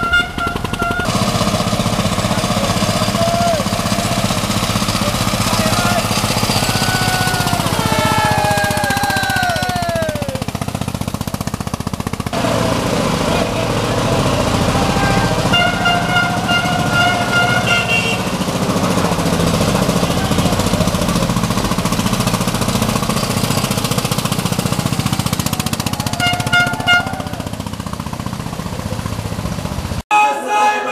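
Vehicle horns honking in short blasts near the start, about halfway through and again near the end, over the steady rumble of engines. A run of falling, whistle-like glides comes about a third of the way in.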